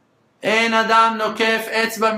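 Only speech: a man's voice, after a brief silence, starts speaking Hebrew about half a second in, in a fairly steady, chant-like pitch.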